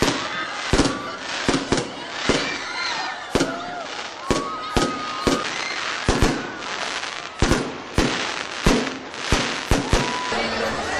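Aerial fireworks display: a rapid, irregular run of sharp bangs, roughly two a second, with sliding whistles rising and falling between them.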